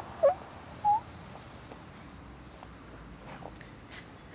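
Two short vocal cries from a young woman as she stumbles, within the first second, the second one rising in pitch, then only faint steady background noise.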